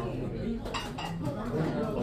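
Dishes and cutlery clinking, a few sharp clinks with the clearest a little under a second in, over a murmur of voices in a restaurant.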